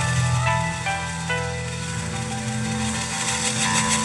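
Live rock band playing: sustained electric guitar notes changing pitch over bass and drums, with cymbal wash building toward the end.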